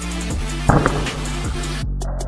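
Background electronic music with a steady beat, and one louder thump a little after half a second in.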